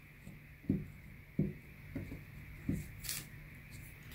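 Glue stick being dabbed and rubbed onto a small paper cut-out lying on a table, giving about five soft low taps.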